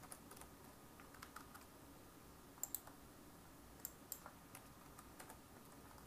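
Faint, scattered clicks of a computer mouse and keyboard, with a quick double click about two and a half seconds in.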